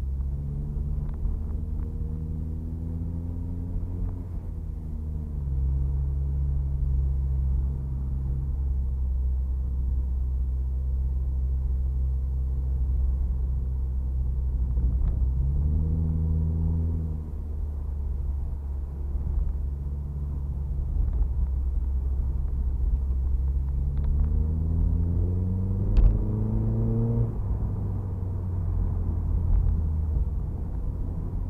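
Turbocharged Mazda MX-5's four-cylinder engine driving, heard from inside the cabin. The engine note rises in pitch three times under acceleration and holds steady in between. There is one short sharp knock near the end.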